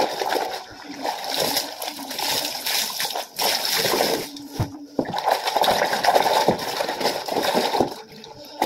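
Clothes being washed by hand in water: fabric rubbed and squeezed, with water splashing and sloshing in uneven bursts and a couple of brief pauses.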